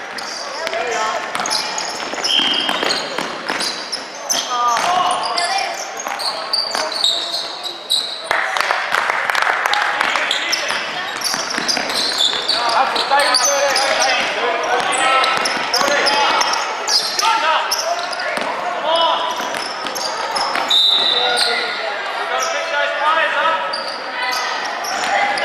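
Sounds of a youth basketball game in a reverberant gym: the ball bouncing on the court, sneakers squeaking on the floor, and players' voices calling out.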